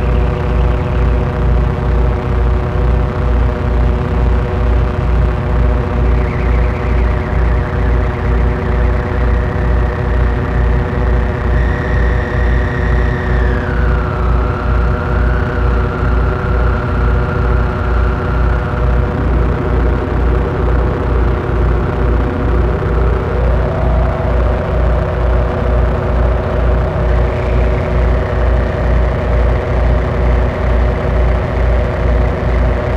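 Analog synthesizer noise jam: layered droning synth tones over a steady, fast low pulse, with reverb and delay on the mix. Partway through, a high tone slides down and settles. Later, another tone slides up and holds.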